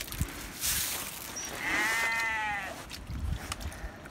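A single drawn-out farm-animal call about two seconds in, rising and then falling in pitch. Wind rumble and rustling on the microphone run under it.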